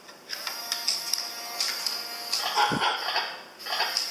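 Teksta 5G robot dog toy reacting to its bone accessory. It plays electronic sound effects and a short jingle through its small speaker over a whirring of its gear motors. The sound starts about a third of a second in, dips briefly, and picks up again near the end.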